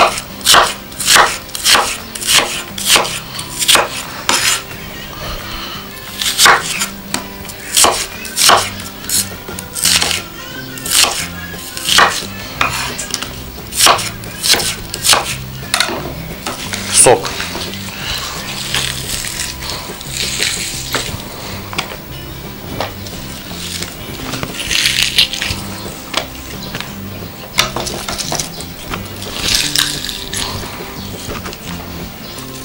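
Kitchen knife chopping onion on a wooden cutting board: sharp, regular knocks, a little more than one a second, for about the first half. They then give way to softer rustling and handling as the sliced onion is worked into meat in a plastic container.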